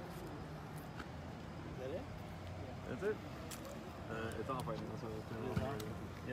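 Indistinct voices talking over a steady low hum of city street traffic; the talk grows busier in the second half.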